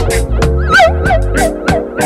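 Reggae record playing: a deep bass line and a drum beat under held chords, with a warbling high sound that wobbles in pitch about half a second in, then short falling notes repeating several times a second.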